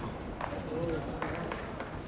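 Tennis players' footsteps on a clay court, a few faint scuffs and steps, with brief voices in the background.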